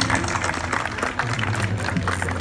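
Folk string ensemble of acoustic guitars and small plucked string instruments strumming the close of the song.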